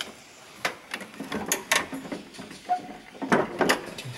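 Several short, sharp clicks and knocks from the metal parts of a John Deere 1790 planter row unit being handled and moved by hand, the loudest near the end.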